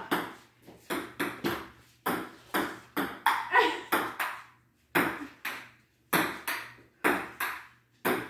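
Ping pong rally: the ball is hit back and forth, making a string of sharp clicks from paddle strikes and table bounces, two or three a second, with a couple of short pauses.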